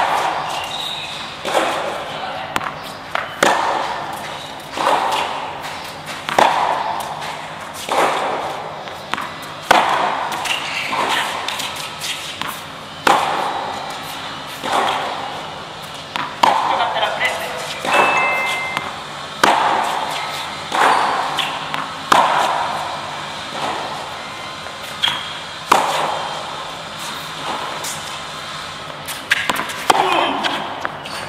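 Tennis ball struck hard by a racket again and again, about one shot every second and a half, each hit echoing under a large metal roof.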